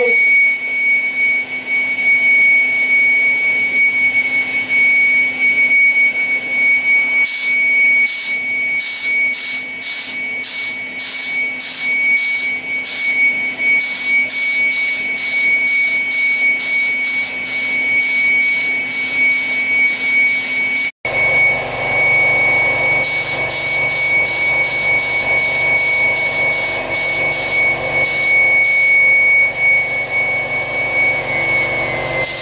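HVLP spray gun hissing in rapid repeated bursts, about two a second, as paint is sprayed onto a car bumper cover. Under it runs a steady hiss and high whine from the air supply. The sound drops out for a moment about two-thirds through.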